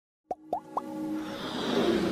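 Intro music for an animated logo: three quick pops about a quarter-second apart, each rising in pitch, then a swell that builds steadily louder.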